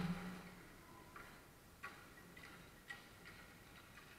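Faint, scattered sharp clicks of hockey sticks striking the ball and the court surface, about five over the few seconds. A low ring from a hard hit fades out at the start.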